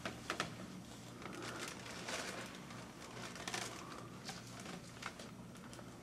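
Quiet room tone with a steady low hum, faint rustling and a few small clicks, two close together right at the start.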